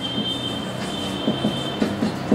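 Felt-tip marker squeaking on a whiteboard as a word is written: a steady high squeal that stops near the end.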